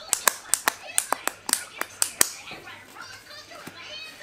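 Hook-and-loop straps of a cycling shoe being pulled and pressed shut by hand: a quick run of about a dozen sharp clicks over the first two seconds, then quieter handling with faint voices in the background.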